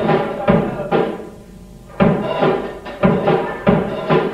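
Garage rock band playing together: guitar and bass chords struck on the beat with drums, about two hits a second. The band breaks off for about a second shortly after the start, then comes back in.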